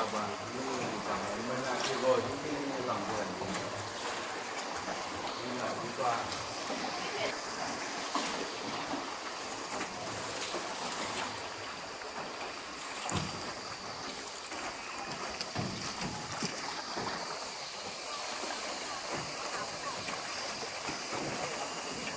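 Water sloshing and splashing around a small wooden rowboat as it is rowed along a river, with an occasional knock of the oar. Indistinct voices can be heard in the first few seconds.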